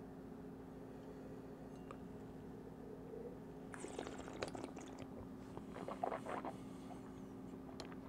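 Faint mouth sounds of a wine taster sipping and working red wine around in his mouth: two short spells of small wet slurping and swishing, about four seconds in and about six seconds in. A steady low hum runs underneath.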